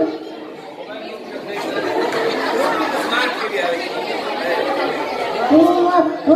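Many children's voices chattering at once, overlapping, with one clearer voice starting near the end.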